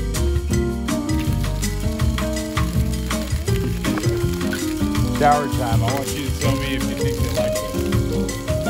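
Background music with a steady beat and a melody of held notes, with some gliding tones about five seconds in.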